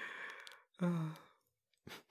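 A man sighing out loud, followed by a short voiced hum about a second in, then short breathy puffs of a chuckle starting at the very end.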